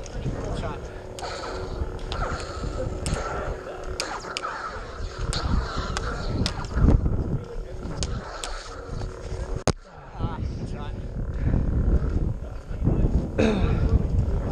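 Lightsaber duel: the polycarbonate blades of two combat sabers clash sharply about a dozen times, over the sabers' steady electronic hum and swing sounds, with rumble on the head-mounted microphone.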